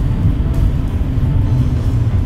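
A loud, steady low rumble with no distinct strokes or tones.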